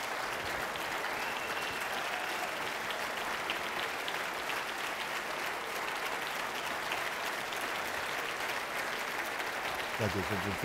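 Large audience applauding, a steady dense clapping that carries on without a break.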